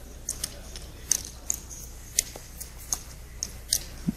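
Poker chips clicking as a player handles them at the table: short, irregular light clicks, two or three a second, over a low steady hum.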